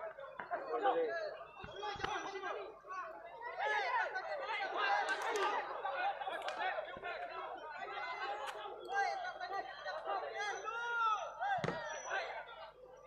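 Several people talking over one another in loud, indistinct chatter, with a couple of brief dull thumps.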